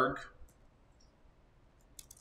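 A few faint clicks of computer keyboard keys in otherwise near silence, with a sharper keystroke click near the end.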